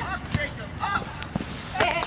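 Scattered brief shouts and calls from youth soccer players and sideline voices, with a few short knocks in between.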